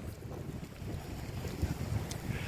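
Wind buffeting the phone's microphone outdoors: an uneven low rumble with a faint hiss above it.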